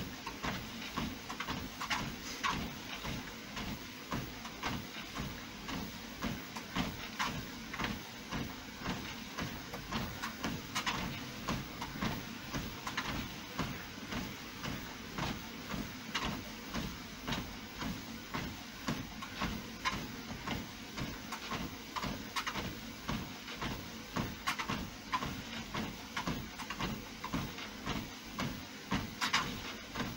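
Fitnord 200 home treadmill running steadily, its motor hum under regular footfalls on the moving belt.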